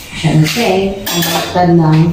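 Metal pots and pans clinking and clattering as a pot is handled on a gas stovetop, with a couple of sharp metallic clanks.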